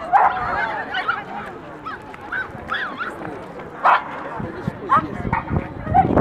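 Dogs barking and yelping in short, sharp bursts, with higher bending calls between them, over crowd chatter.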